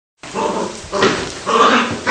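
An Australian terrier vocalizing in three short, loud bursts about half a second apart.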